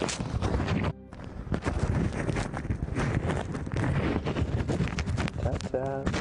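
Phone microphone muffled inside a wingsuit: dense rustling and scraping of suit fabric against it, with many small knocks, and a brief lull about a second in. A man's voice comes in near the end.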